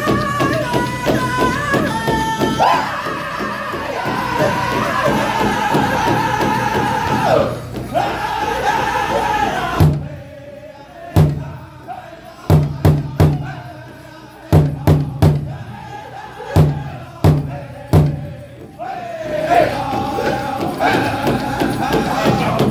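Powwow drum group singing a Chicken Dance song together over steady beats on a large hide drum. About ten seconds in the voices stop and only separate hard drum strikes sound, in uneven twos and threes. The singing comes back in near the end.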